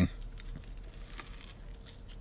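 Biting into a crispy fried chicken sandwich on a toasted buttered bun, then chewing: faint crunches and wet mouth sounds.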